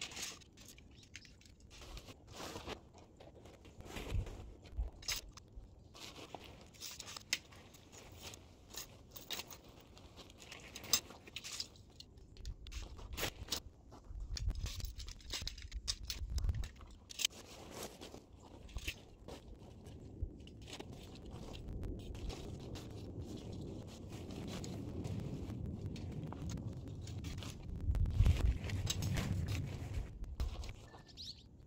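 Tent poles and nylon tent fabric being handled while a tent is pitched: irregular clicks, scrapes and crunches, then steadier, louder rustling of the fabric building up in the second half.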